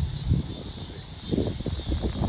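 Wind buffeting the microphone outdoors, a steady low rumble, with a few irregular soft scuffs in the second half.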